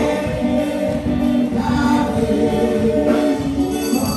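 Congregation singing a gospel song together, many voices in chorus over a steady beat.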